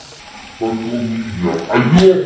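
A person's drawn-out crying wail, one held pitched cry starting about half a second in and rising in loudness toward the end.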